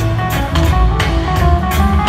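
Live reggae band playing, with deep bass, drums on a steady beat and guitar, heard from the audience seats of a large venue.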